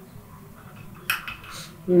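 A hand-held glass tumbler with a drink in it clinking lightly twice as it is swirled: a sharp clink about a second in and a fainter one half a second later.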